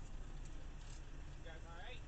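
Low, steady rumble of a semi truck idling, heard inside the cab. About one and a half seconds in comes a short, rising, voice-like sound.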